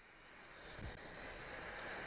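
Wind noise on the microphone, growing steadily louder, with one faint knock a little under a second in.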